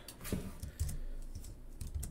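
Typing on a computer keyboard: a run of short key clicks.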